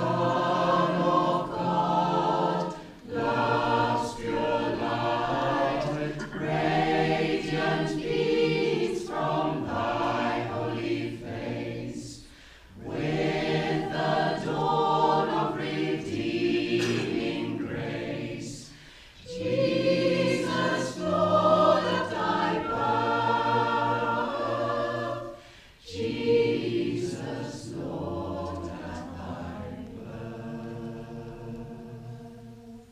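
A choir singing a Christmas carol in phrases, with short breaks between them. The singing grows quieter in the last few seconds.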